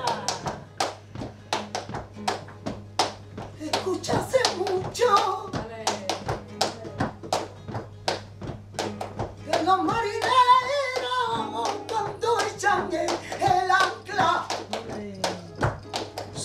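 Flamenco palmas: hand claps keeping a steady rhythm under a woman's flamenco singing (cante), her voice rising in ornamented wails with the longest held line about two thirds of the way through.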